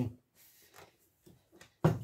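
Faint taps and rustles of hands handling a plastic water filter jug, then one sharp plastic knock shortly before the end.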